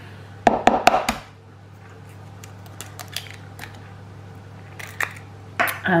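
An egg cracked against the rim of a plastic measuring jug: a quick cluster of sharp knocks about half a second to a second in, followed by a few light clicks and taps as the shell is opened and emptied into the jug.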